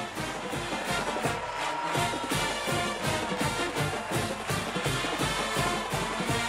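Brass band music playing with a steady beat, the kind a stadium band plays after a touchdown.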